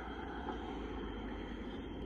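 Steady, even outdoor background rumble with no distinct events, and a faint constant high-pitched tone above it.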